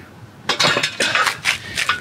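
Plate-loaded steel Titan Fitness upright farmer handles clinking and rattling as they are lowered toward the ground, a quick run of sharp metallic clinks starting about half a second in.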